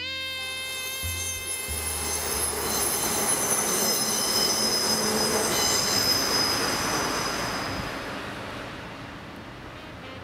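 A train passing: a rush of wheel-on-rail noise with several high, steady squealing tones from the wheels, building to its loudest about halfway through and then fading away.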